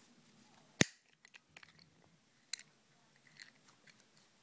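Small hinged plastic sewing-kit case snapping shut with one sharp click about a second in, followed by a second, fainter click and light ticks of handling.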